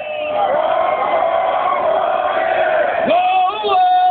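Live rock concert heard from inside the crowd: a male singer's long, wavering held vocal notes over the PA, with the crowd yelling and cheering. A little after three seconds the voice slides up into another long held note.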